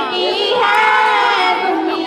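A naat, an Urdu devotional song, sung by a group of children's voices in unison with no instruments. The voices hold one long note through the middle, then break off near the end.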